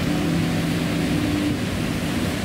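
Steady rushing noise of waves washing against a shore.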